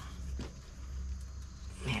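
A few faint metallic clicks as the mounting bolts of a motorcycle fuel tank are worked loose by hand, over a steady low hum.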